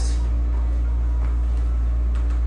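A steady low hum throughout, with the faint rustle of a cloth snake bag being twisted shut by hand.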